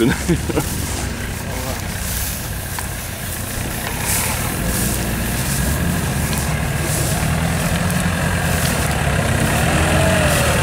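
Engine of a lifted off-road Lada Niva on oversized tyres running as it drives through tall grass, growing louder from about halfway through as it nears.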